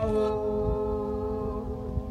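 A young man's voice singing one long held note of a gospel chant, unaccompanied.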